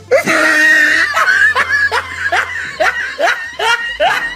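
A person laughing hard. It starts with a drawn-out high-pitched squeal, then breaks into rapid bursts of laughter, about two or three a second.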